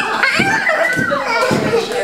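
Young children playing, their high voices chattering and squealing over one another.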